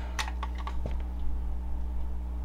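A clamp meter being handled and its plastic jaws clamped around a wire, giving a couple of small clicks in the first second, over a steady low electrical hum.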